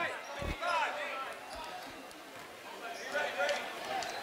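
A basketball being dribbled on a hardwood gym floor: a low thud about half a second in and a fainter one about a second later, under the faint chatter of a gym crowd.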